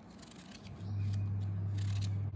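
Kitchen knife slicing through a peeled vegetable held in the hand, a few crisp cuts. A loud steady low hum starts suddenly a little under a second in.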